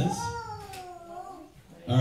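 A single long, high-pitched wailing cry that falls in pitch over about a second and a half, meow-like in shape, in a pause between a man's amplified speech.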